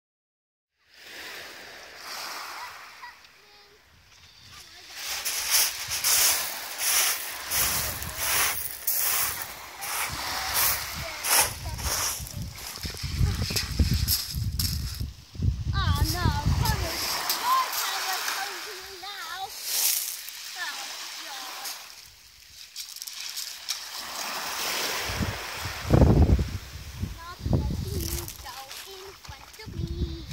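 A child in wellington boots stamping on a shingle beach and splashing in shallow sea water: pebbles crunch and water splashes in quick, irregular strokes, thickest in the first half, with small waves washing at the water's edge.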